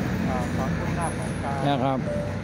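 A man speaking Thai in short phrases over a steady low hum of street traffic.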